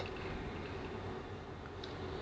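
Faint room tone: a steady low hum and hiss with no distinct sound event.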